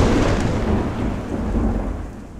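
Deep thunder-like rumble of an intro logo sound effect, a noisy low roll with no tune, beginning to die away near the end.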